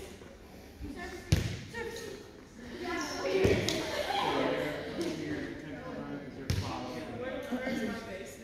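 A volleyball being struck and bouncing on a gym floor: about four sharp smacks, the loudest a little over a second in, ringing in a large hall, with voices in the background.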